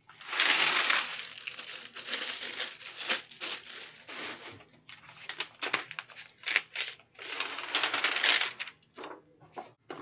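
Printed paper and its Xyron adhesive film and backing liner being handled and peeled apart by hand, crackling and rustling. The longest bursts come right at the start and again about three-quarters through, with small clicks and taps between.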